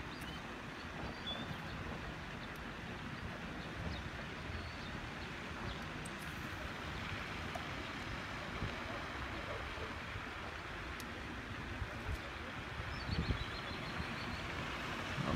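Steady outdoor wind noise with a low rumble of wind on the microphone, and a few faint high chirps about a second in and again near the end.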